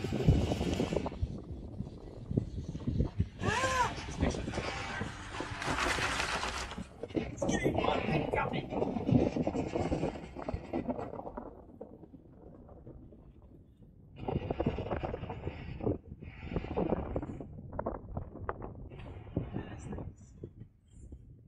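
Indistinct voices mixed with gusty noise on the microphone, coming and going, with a quieter lull about twelve seconds in.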